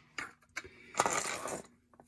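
Plastic cover being pulled off the underside of a Whirlpool top-load washer: a few light plastic clicks, then a scraping clatter about a second in as it comes free.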